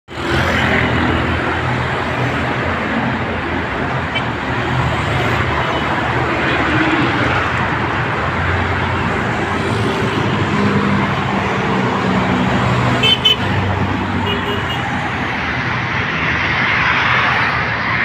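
Steady road traffic noise, with motor vehicle engines running low and shifting in pitch, and a couple of short high tones a little past two-thirds of the way through.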